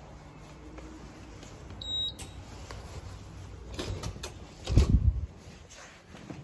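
Card reader giving one short electronic beep about two seconds in, followed by a few clicks and then a loud cluster of low thuds just before five seconds, like a heavy door swinging shut.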